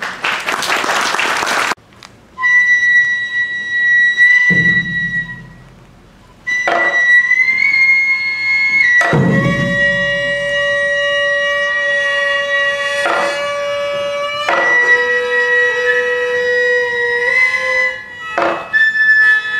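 Gagaku court music played live: wind instruments holding long, steady notes, thickening into a chord of many held pitches about nine seconds in, with two deep drum strokes about four and a half seconds apart. A short burst of noise comes before the music starts.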